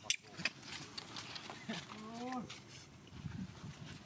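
Long-tailed macaques: a few sharp clicks near the start, then one short call that rises and falls in pitch about two seconds in.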